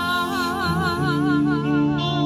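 A woman's voice holding a long wordless sung note with a wide, even vibrato, over a steady sustained backing chord.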